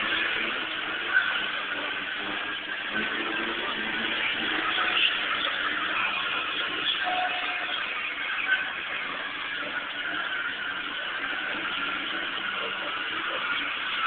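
Cars driving around a paved arena with their engines running, in a muffled low-quality recording. A short sharp sound comes about a second in and another just past the middle.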